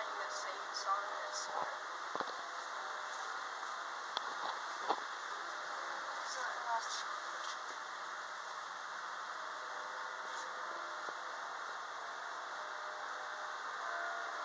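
Steady hum and hiss inside a ThyssenKrupp hydraulic elevator car during travel, with distant voices from the surrounding store and a few light clicks.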